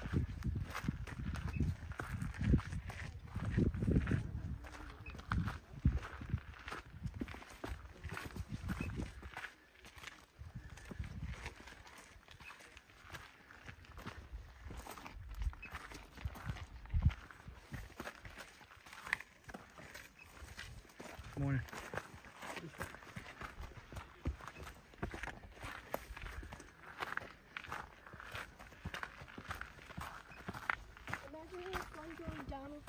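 Footsteps crunching on gravel and granite rock as people walk along a rocky trail, a steady run of short scuffs. Low rumbling on the microphone is heavy for the first nine seconds or so.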